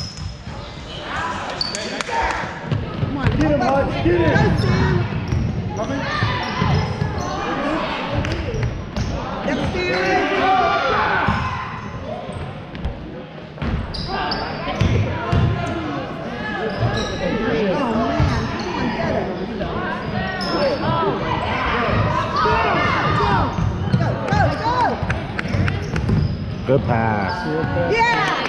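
A basketball bouncing on a hardwood gym floor amid indistinct voices of players and spectators, all echoing in a large gymnasium.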